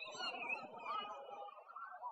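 A person's voice, its pitch bending and holding without a break.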